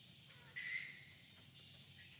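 A single short, high-pitched animal call about half a second in, over a steady faint hiss.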